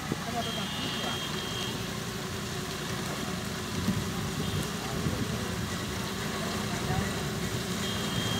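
Diesel tractor engine running steadily as its front dozer blade pushes earth and gravel. A high steady beep sounds for about a second near the start.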